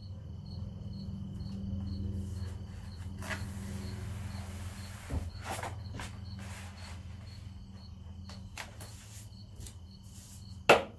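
Vinyl wrap film and its backing paper being peeled by hand, rustling with several sharp crackles.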